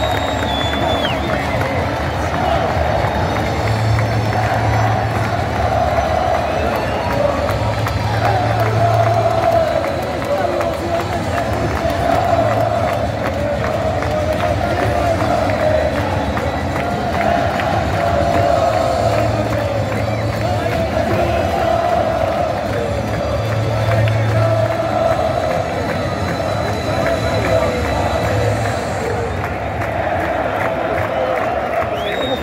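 A packed stadium crowd of football supporters singing a chant together, a continuous mass of voices that never pauses, with low rumbles coming and going underneath.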